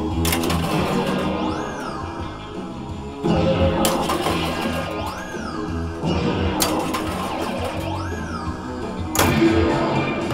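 Stern Munsters pinball machine playing its guitar-driven rock music through its speakers during play. A swooping rise-and-fall tone repeats several times, and a few sharp hits cut in.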